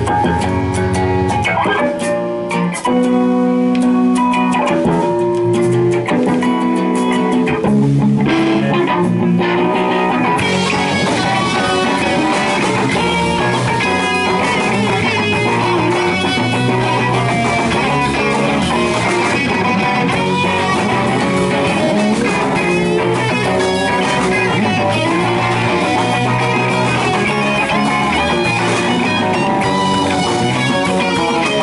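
Live instrumental rock band: two electric guitars and an electric bass, joined by a drum kit. The guitars and bass play sustained notes alone for about the first ten seconds, then the drums and cymbals come in and the full band plays.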